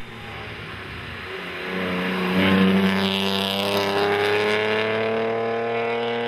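BMW 323i race car's straight-six engine accelerating up the hill in one long pull, pitch rising steadily. It gets louder about two seconds in as the car comes close.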